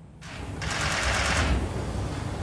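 Many press cameras' shutters clicking rapidly and without a break, starting about a quarter second in.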